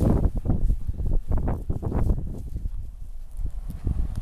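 Footsteps on a wood-chip mulch path: an irregular run of low thuds and rustles, thinning out about three seconds in.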